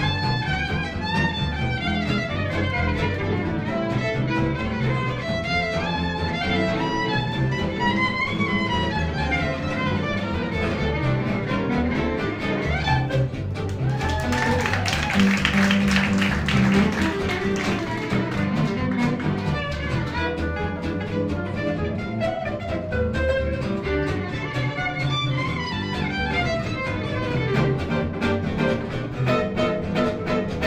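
Gypsy-jazz string quartet playing: a violin carries a gliding bowed melody over acoustic rhythm guitars and upright bass, with a denser, louder stretch about halfway through.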